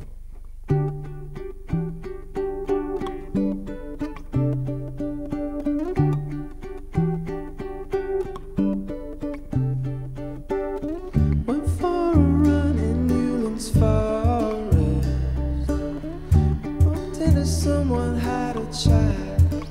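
A pop band's song intro played live. Picked guitar notes repeat a pattern over stepping bass notes from about a second in. About eleven seconds in, the full band comes in with a heavier low end and a denser sound.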